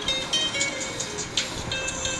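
A song playing through an iPhone XR's built-in speaker.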